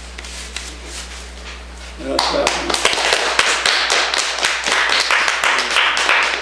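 A small audience applauding. The clapping starts about two seconds in, after a quieter stretch, and keeps on.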